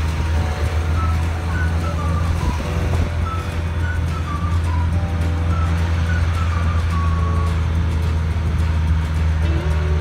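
Steady low drone of a motor vehicle's engine while riding, with background music carrying a simple melody of short stepped notes over it.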